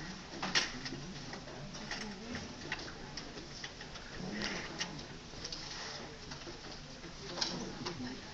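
Paper cards being handed out and handled in a meeting room: scattered soft clicks and rustles over a low murmur of quiet voices.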